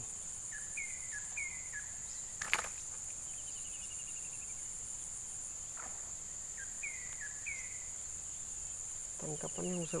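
Insects buzzing in a steady, high continuous drone, with a bird's short falling chirps repeated in pairs and a brief trill. A single sharp click about two and a half seconds in.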